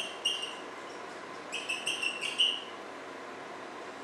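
Whiteboard marker squeaking against the board as figures are written: a couple of short high squeaks at the start, then a quicker run of squeaks about two seconds in.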